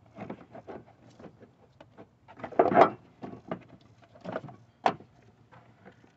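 Hard plastic battery tray being handled and pushed down into its seat in an engine bay: a series of light knocks, clicks and scrapes, with a louder scrape a little under halfway through and a sharp click near the end.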